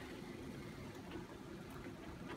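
Faint, steady low hum with thick plum and apple chutney simmering in a pan on the hob, giving a few soft pops.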